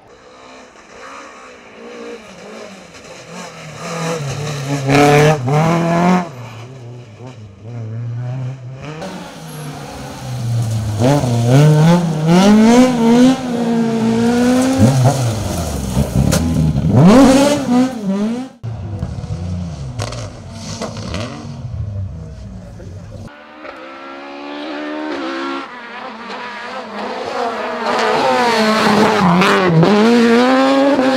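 Rally car engines revving hard through corners, one car after another, the pitch climbing and dropping sharply as the drivers lift, brake and change gear. Among them is a Mk2 Ford Escort.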